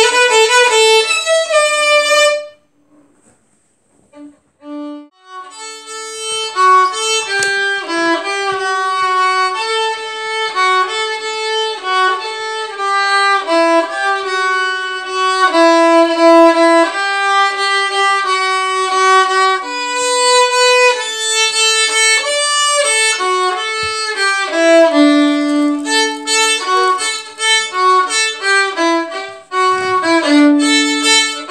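Solo violin playing a Christmas tune, a bowed melody in the instrument's middle and upper range. The playing stops about two and a half seconds in, and after a pause of about three seconds the violin starts again and plays on.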